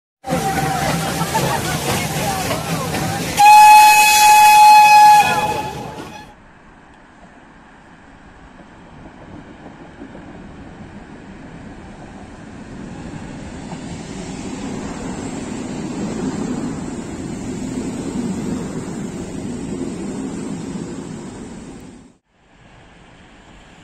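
Steam locomotive hissing steam, then its whistle sounding one steady high note for about two seconds, the loudest part. After an abrupt drop, the rumble of an ED72a electric multiple unit approaching on the rails slowly builds, then fades near the end.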